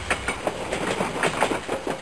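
Train wheels clattering over rail joints: a rapid, irregular clicking over a low rumble, cut in and out abruptly like an inserted clip.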